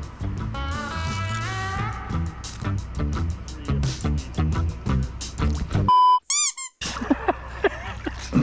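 Upbeat edited background music with a steady beat and a rising sweep near the start. About six seconds in the music stops for a short electronic beep and a quick run of comic squeaky pitch-glide sound effects, then a moment of silence before live splashing in the river returns.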